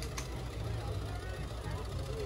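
Vintage Ford engine idling with an even, rapid low pulse that shakes the car a bit.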